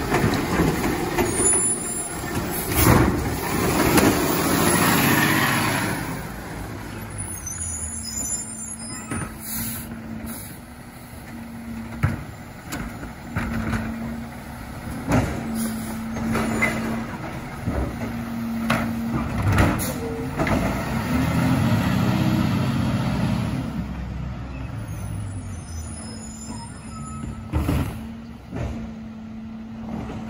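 Diesel Labrie Automizer side-loading garbage truck working a street: the hydraulic arm shakes a cart empty into the hopper in the first few seconds, then the diesel engine pulls the truck away with a steady low drone, rising in a louder rumble about two thirds of the way through. Several short sharp air hisses from the brakes break in along the way.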